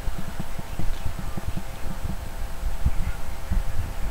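Handling noise as cloth bloomers are pulled on over a silicone doll's legs: fabric rustling with many soft, irregular low bumps.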